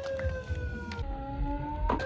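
A long siren-like tone that falls slowly in pitch and jumps to a new pitch about a second in, over scattered sharp clicks. A sharp knock just before the end as a skateboard hits the concrete.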